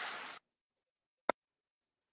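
A short hiss that cuts off abruptly, then dead silence broken by a single sharp click about a second in.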